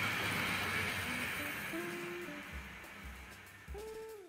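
Tri-ang 00-scale model train running on its track, a steady rattling hum that fades away. Soft guitar music fades in about halfway through and is clearer near the end.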